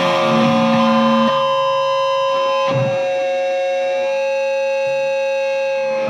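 Close of a metalcore song: electric guitar notes held and ringing on as long, steady tones, with the chord shifting a few times.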